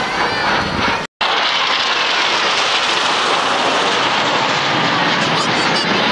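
Jet engine noise from Kawasaki T-4 jets flying overhead in an air display: a loud, steady rush of sound that drops out for a moment about a second in and then carries on evenly.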